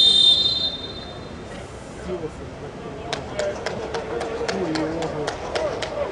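Referee's pea whistle blown once, a short shrill trilling blast of about a second. Distant players' voices follow, with a run of sharp clicks in the last three seconds.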